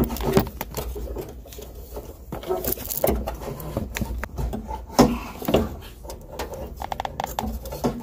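Irregular clicks, knocks and light rattles of a car's fuel pump assembly being worked by hand out of the fuel tank opening, its metal top plate and plastic fittings and tubes bumping against the tank and body.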